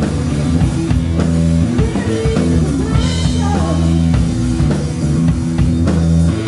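Live band playing a rock-pop number: electric guitar over a steady bass line and a drum kit beat.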